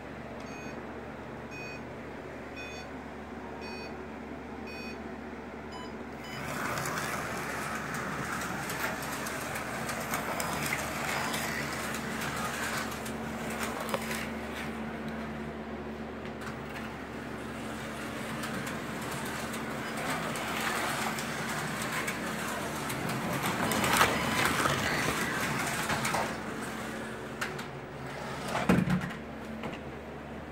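Carrera Digital 132 slot cars running on the track, a steady electric whirr of motors and pickups in the slots that starts about six seconds in, after a string of short electronic beeps. It gets louder in places late on, with a thump near the end.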